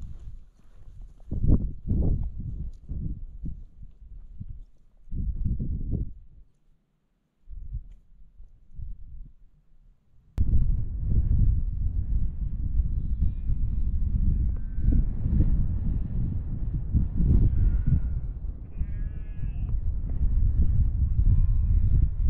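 Sheep bleating several times, short calls spread through the second half, over a steady rumble of wind on the microphone. Before that, irregular low thumps and gusts, with a brief quiet gap just before the wind rumble starts abruptly about ten seconds in.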